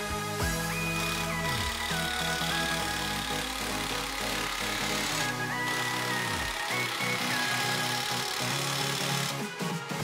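Background music: a lead melody stepping between held notes over a bass line that slides down twice.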